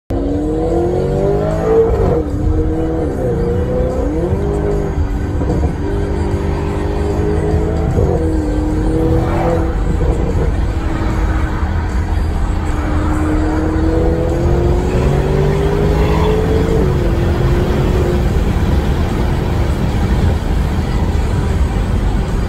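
Engine of a Stage 3 tuned Audi S6, heard from inside the cabin over a deep, steady rumble. Its pitch climbs under acceleration and drops sharply at each upshift, several times in a row, then settles into a steady cruise near the end.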